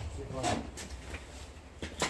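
Brief talk, then a sharp knock near the end as a plastic-bodied power tool is lifted out of a pile of other power tools.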